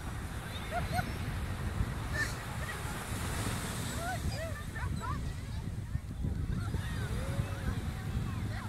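Steady rush of ocean surf and wind, with several short, faint whining squeaks from a small dog, one drawn out near the end.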